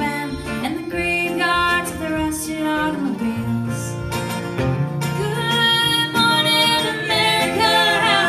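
Live acoustic country-folk band: a woman singing over strummed acoustic guitar, with fiddle.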